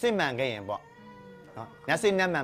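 A person speaking in a language the English transcript does not render, the voice gliding strongly in pitch, with a brief pause in the middle. Soft background music with steady held tones runs underneath.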